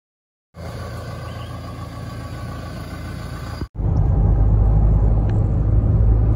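Low, steady rumble of a car driving, heard from inside the cabin, starting after a brief silence. About three and a half seconds in, a cut switches from a quieter stretch to a louder, heavier cabin rumble.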